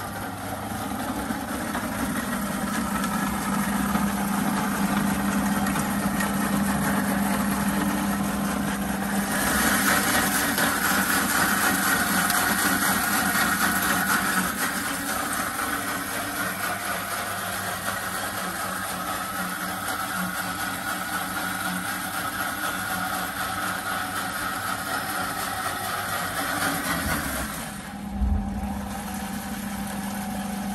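Braun countertop blender's motor running at speed, blending cucumber, celery, lemon and water into juice. Its sound grows louder and brighter about nine seconds in, dips near the end, with a short low knock, then carries on.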